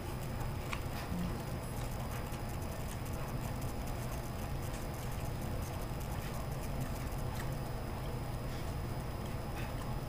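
A person chewing a mouthful of rehydrated ramen meat, with a few faint clicks of chopsticks, over a steady low room hum.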